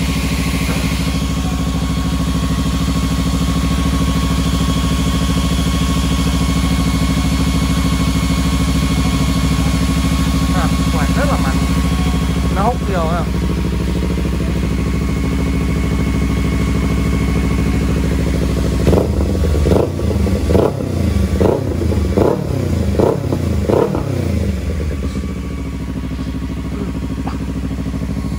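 Kawasaki Z300's parallel-twin engine idling steadily on the stand. About two-thirds of the way through it is revved in a quick series of short throttle blips, then settles back to idle.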